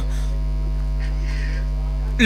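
Steady electrical mains hum with its overtones, the low buzz of the microphone and sound system.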